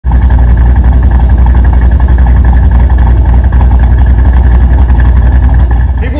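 2006 Mustang GT's three-valve 4.6-litre V8, with a Whipple supercharger and Detroit rocker camshafts, idling steadily, heard close up at the exhaust tip.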